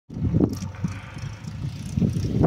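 Wind buffeting the microphone: an uneven, gusting low rumble, with a stronger gust about half a second in.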